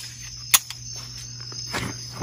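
Crickets chirping steadily outdoors, with one sharp click about half a second in.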